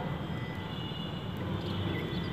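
Steady low rumble of background noise, with faint, short, high chirps now and then.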